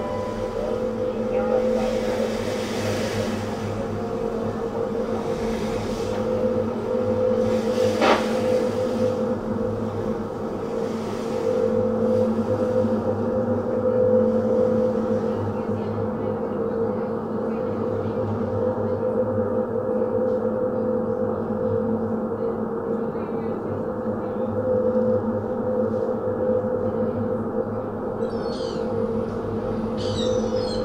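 Live laptop electronic music: a sustained drone of low steady tones, with washes of noise swelling and fading every couple of seconds in the first half and a sharp click about eight seconds in. Near the end, chirping high-pitched textures come in over the drone.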